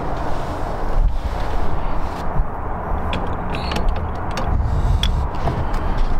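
Rumbling wind and handling noise on the microphone, with rustling and a few light knocks as someone climbs into a car's seat.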